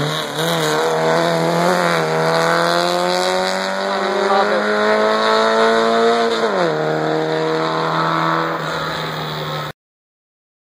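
1977 Honda Civic hillclimb race car's engine under hard acceleration through its headers, the pitch climbing steadily, then dropping sharply with a gear change about six and a half seconds in and holding steady as the car pulls away uphill. The sound cuts off suddenly just before the end.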